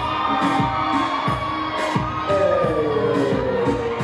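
Live band music with a steady drum beat, heard from the stage edge, with the audience's noise under it. A long held note glides slowly down in the second half.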